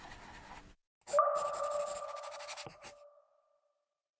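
Logo-animation sound effect: a scratchy brush-stroke noise that stops under a second in, then a ringing chime-like ping that starts about a second in and fades away over about two and a half seconds, with two small clicks near the end.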